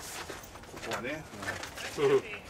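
Faint, indistinct voices of ballplayers calling out on the field.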